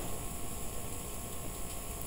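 Steady background hiss with a low hum from the recording, with no distinct sound events.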